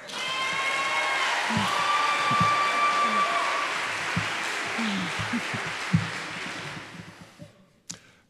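Audience applauding, with voices calling out among the clapping; it starts at once, holds steady, then dies away about a second before the end.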